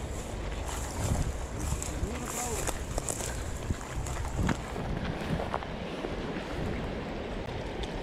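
Wind buffeting the microphone over the steady rush of a river, with a few small clicks and knocks from handling a spinning reel and rod while a trout is reeled in.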